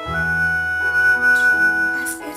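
Live theatre orchestra accompaniment: a new chord enters, and a single high note is held over a sustained low bass note.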